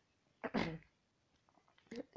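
A woman's single short cough, about half a second in.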